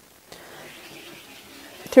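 Rotary cutter rolling through cotton quilt fabric against a cutting mat along a ruler edge: a faint, steady hiss that starts about a third of a second in and lasts about a second and a half.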